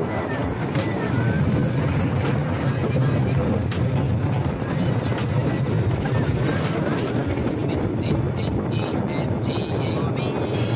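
Motorised bamboo train (norry) running along the rails: the steady low drone of its small engine under a continuous running rumble.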